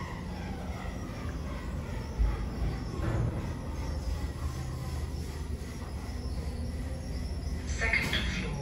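An OTIS GeN2 gearless lift car travelling upward: a steady low rumble and hum of the ride, with a brief bump about two seconds in.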